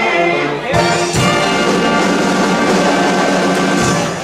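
Big band of brass, saxophones and drum kit playing the close of a swing arrangement: a couple of accented hits about a second in, then a long held final chord with a drum hit near the end.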